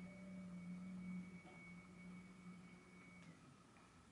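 Near silence: room tone with a faint steady low hum and a thin high tone, both stopping about three seconds in.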